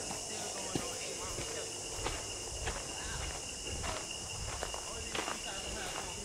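Footsteps on a dirt forest trail, faint and irregular, over a steady high drone of forest insects with a thin continuous whine.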